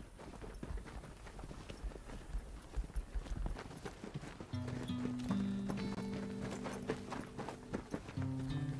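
Footsteps of a group walking in boots on a dry dirt track: many irregular footfalls. About halfway through, music with long held low notes comes in over them.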